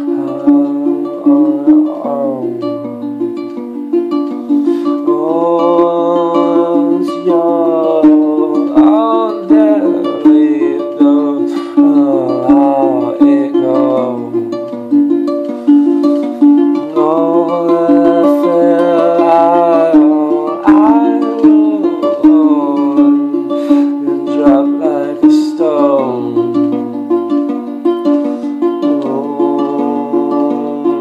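A man singing long, wavering notes over a small plucked string instrument that is fingerpicked in a steady, repeating pattern.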